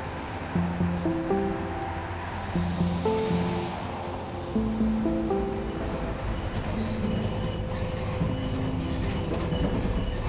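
Background music: a slow melody of short held notes at changing pitches over a steady low bass drone.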